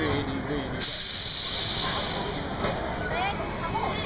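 A sudden loud hiss of spray starts about a second in and stops after roughly two seconds, over the steady low rumble of the ride machinery. It fits the ride's water jets firing at the low-swung gondola.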